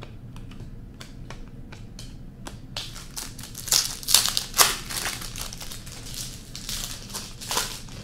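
Trading cards clicking as they are flipped through by hand, then the plastic wrapper of an O-Pee-Chee Platinum hockey card pack crinkling as it is handled, loudest in a few sharp crackles in the middle and once more near the end.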